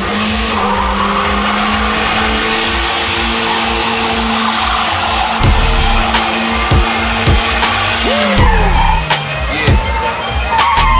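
Pickup truck drifting: its engine held at a steady high pitch while the rear tyres skid and squeal in a broad hiss. About eight seconds in, the tyre noise stops and the engine note drops as the driver eases off.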